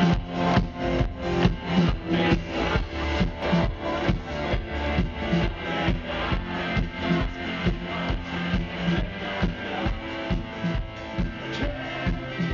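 Live rock band playing loud amplified music: electric guitar, bass guitar, keyboard and drum kit driving a fast, steady beat.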